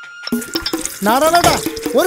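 A man speaking loudly and animatedly from about a second in, preceded by a brief hissing noise; a held background music tone ends in the first second.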